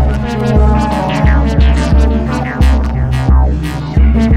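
Live electronic music: deep bass pulses in an uneven rhythm, roughly two to three a second, under quick falling high sweeps.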